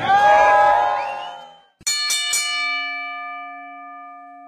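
A man's drawn-out shout trails off. About two seconds in, a wrestling ring bell is struck three times in quick succession, and its tone rings on and slowly fades.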